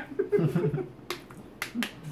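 A soft laugh, then a few sharp clicks and crackles from plastic water bottles being picked up and opened.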